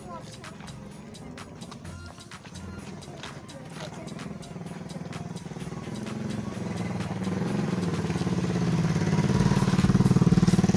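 A motor vehicle approaching, its engine growing steadily louder as it nears.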